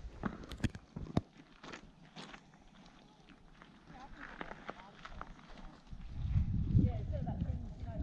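Footsteps on the loose stones of a dry riverbed: a few sharp clacks of rock knocking on rock in the first two seconds, then quieter. A low rumble, like wind on the microphone, comes in about six seconds in.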